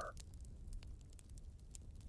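Faint campfire crackling: a low steady hiss with scattered small pops of burning wood.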